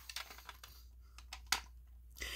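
A few light clicks and taps of plastic and metal as a Simplex pull station is handled and opened, its red plastic housing coming apart from the steel back plate; the clearest click comes about one and a half seconds in.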